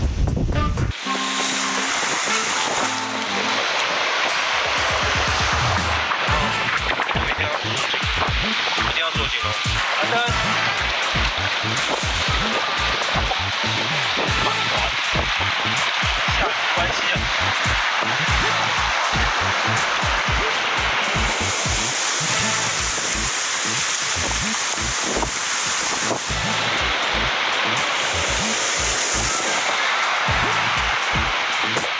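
Background music with a steady low beat, over a constant rushing wash of sea surf.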